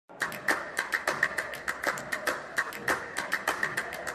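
A rapid run of sharp handclaps, slightly uneven, about five a second.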